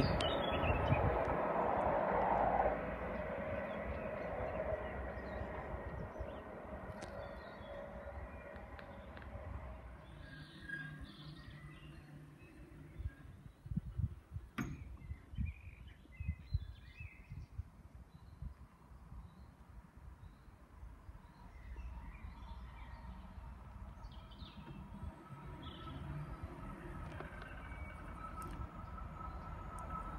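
Southern Class 377 Electrostar electric multiple unit moving away, its motor whine and rail noise fading out over the first several seconds. Birds chirp in the quiet middle, with a few low thumps, and from about two-thirds of the way in the hum and steady whine of the next approaching Class 377 train rise.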